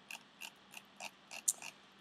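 A run of light, sharp clicks, about three a second, from the computer being used to scroll a document.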